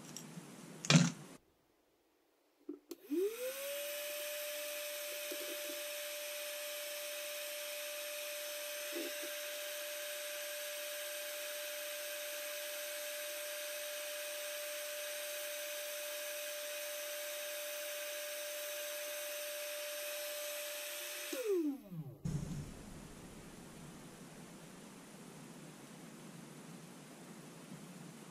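Black & Decker heat gun switched on: its fan motor spins up with a rising whine to a steady hum and airy hiss, runs for about eighteen seconds while a metal spoon lure is heated for powder paint, then is switched off and winds down with a falling whine and a few clicks. A sharp knock comes about a second in, before the gun starts.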